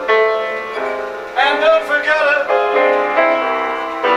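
A man singing a 1918 popular standard in a live solo performance, accompanying himself on a keyboard instrument with sustained chords that change in steps.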